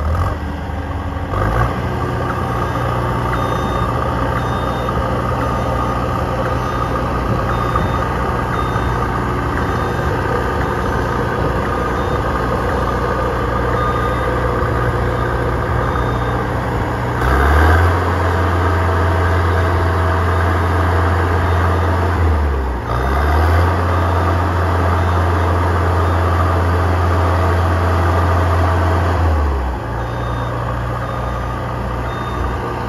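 The engine of a JLG 400S telescopic boom lift runs steadily while the boom is operated and raised. About halfway through, the engine speeds up and gets louder, dips briefly a few seconds later, picks up again, and drops back just before the end.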